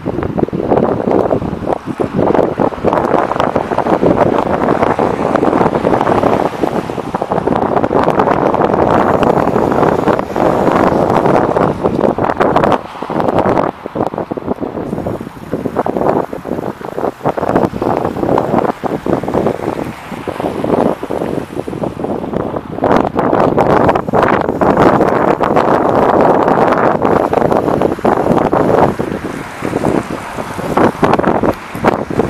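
Wind buffeting the microphone in loud, uneven gusts over the noise of city street traffic.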